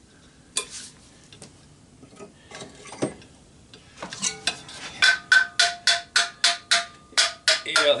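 Hammer blows on an electric motor's rotor shaft and cast aluminium end bell, knocking to free the end bell from the shaft. A few scattered knocks and handling clatter come first; from about halfway through, a quick run of about a dozen blows, about four a second, each with a metallic ring.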